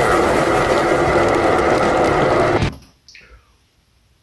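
Loud, dense intro sound of a title sequence, music and effects, that cuts off abruptly near three seconds in. A faint falling sweep trails off into near silence after it.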